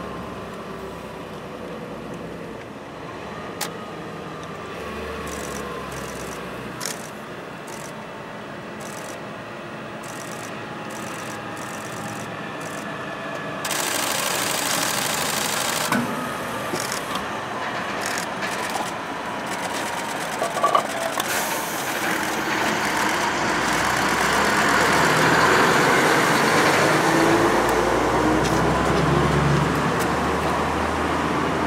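A heavy truck hauling a low-loader trailer drives past, followed by a line of cars and vans, with engine and tyre noise. The noise steps up about halfway through and is loudest near the end as the following vehicles pass.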